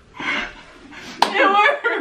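A person laughing in a high voice, with one sharp slap, like a hand clap or smack, about a second in.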